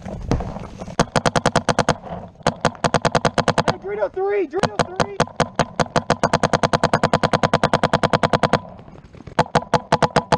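Electronic paintball marker firing in rapid streams, about ten shots a second, in several long bursts with brief pauses. A short shout cuts in about four seconds in.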